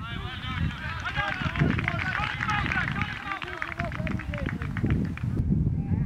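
Players and spectators shouting, many voices overlapping, over a low rumble of wind on the microphone; the higher sounds drop out sharply near the end.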